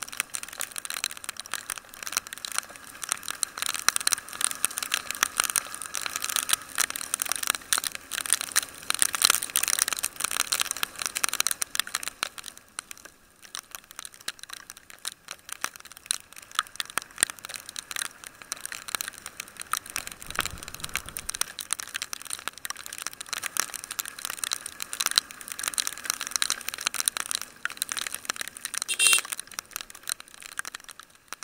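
Raindrops striking a camera mounted on a moving motorbike in heavy rain: a dense, irregular crackle that thins for a few seconds around the middle. A brief low rumble comes about two-thirds of the way through.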